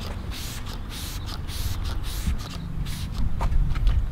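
Trigger spray bottle pumped again and again, giving a quick series of short hisses of fabric protectant onto a canvas convertible top. The hisses come thickest in the first couple of seconds, with a few more later, over a low steady rumble.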